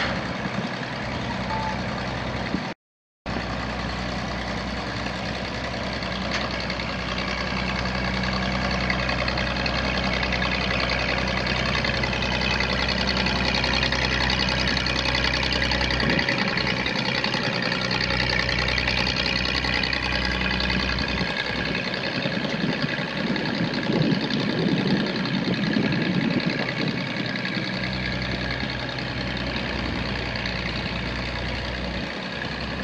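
Gas engine of a 1973 Bantam T350A truck crane running steadily at idle. It drops out completely for a moment about three seconds in.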